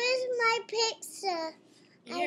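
A young child's high-pitched voice in a few drawn-out, sing-song syllables without clear words, stopping about a second and a half in.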